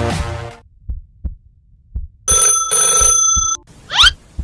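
Electronic intro music fades out in the first half second. A few soft low thumps follow, then a phone rings once for about a second, a steady electronic ring with several high tones. A quick rising swish comes right at the end.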